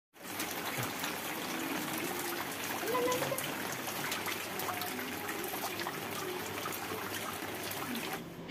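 Rain falling into a shallow pool of water on a concrete terrace: a steady watery hiss of many small drops and trickling, with faint voices in the background.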